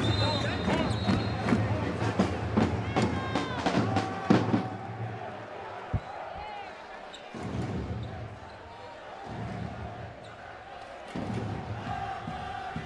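Basketball arena sound on a hardwood court: a ball bouncing and brief sneaker squeaks over crowd voices and arena music. Dense and loud for the first four seconds or so, then quieter, with a single sharp knock about six seconds in.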